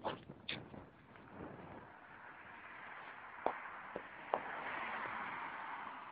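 Faint outdoor street noise: a soft hiss that slowly builds over the last few seconds, with three light clicks a little past the middle.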